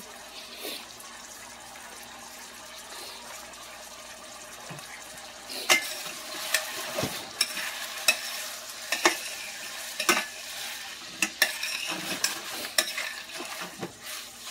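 Shrimp sizzling in garlic butter in a frying pan. From about six seconds in, a utensil stirring knocks and scrapes against the pan in quick, repeated clicks.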